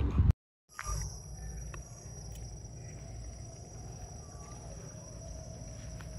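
Night-time outdoor ambience: a steady high-pitched insect drone over a continuous low rumble, after a brief cut to silence.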